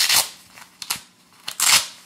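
Hook-and-loop (Velcro) flap on a fabric carrying pouch being pulled open: two short ripping rasps, one right at the start and one about a second and a half in.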